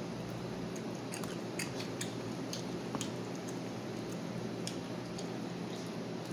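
A child chewing a piece of shrimp close to the microphone. Her mouth makes scattered small clicks and smacks, about seven over the few seconds, over a steady background hiss.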